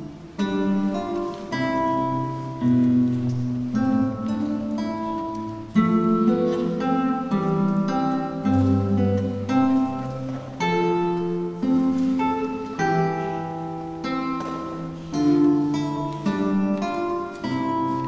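Solo classical guitar played fingerstyle: a continuous run of plucked melody notes over bass notes and chords, each note ringing and dying away.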